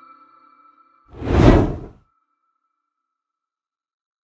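The last sustained notes of a keyboard intro jingle fade away, then a whoosh transition effect swells up and cuts off suddenly about two seconds in.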